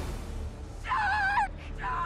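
A small dog whimpering: a short, high whine about a second in, and another beginning near the end.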